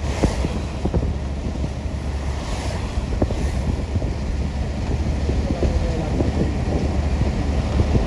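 Wind buffeting the microphone: a steady low rumble with a hiss over it.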